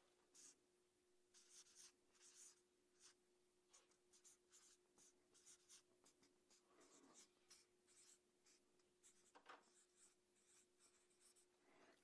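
Faint strokes of a marker writing on a flip-chart pad: short scratchy strokes in quick runs with brief pauses between words.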